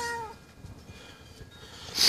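A kitten gives one short, slightly falling meow. A rush of noise begins right at the end.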